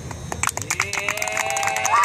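A small group clapping and cheering: quick handclaps from about half a second in, then several voices join with long held whoops that grow louder near the end.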